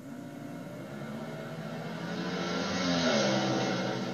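Two Junior Fuel dragsters launching off the starting line and accelerating down the strip. Their engines build steadily, are loudest about three seconds in, and drop in pitch there.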